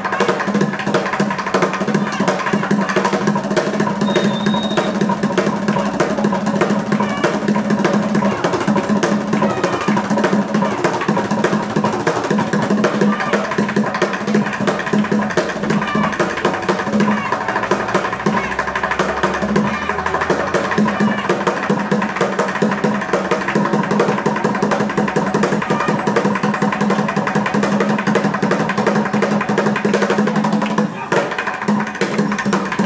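Fast, continuous street drumming on plastic joint-compound buckets, a dense run of rapid strikes with a crowd's voices underneath.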